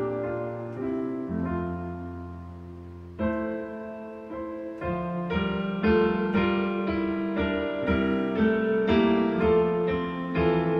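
A hymn played in sustained chords on a digital piano, softer at first, then stepping up about three seconds in and fuller and louder from about five seconds in.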